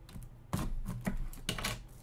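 Plastic shrink wrap on a trading-card box being slit with a box cutter and torn open: a quick run of sharp crackles and crinkles starting about half a second in.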